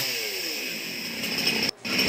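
Chainsaw engine revving down, its pitch falling over about the first second, then running on steadily while clearing a fallen tree. The sound cuts out for a moment near the end.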